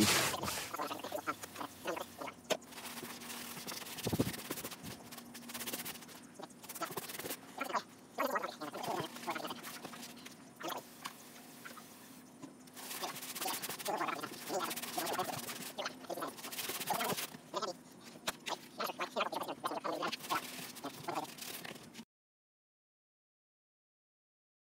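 Gloved hands working a damp sand, perlite and cement refractory mix in a plastic mixing tub: irregular gritty scraping and wet squishing, with louder stretches of stirring. It cuts off abruptly near the end.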